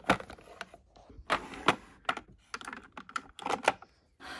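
Makeup tubes, bottles and compacts clicking and clattering against clear plastic organizer drawers as a hand rummages through them: a run of sharp clicks and knocks, bunched in quick clusters in the second half.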